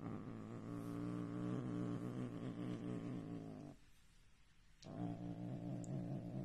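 A cat making a long, low, steady rumble that breaks off for about a second and then starts again.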